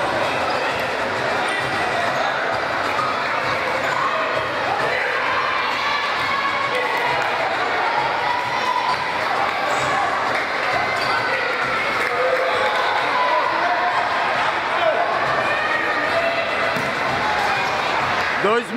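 A futsal ball being kicked and bouncing on a hard indoor court during play, over a steady mix of children's and spectators' voices echoing in a large gymnasium.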